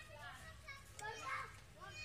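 Faint background voices of children talking and playing at a distance.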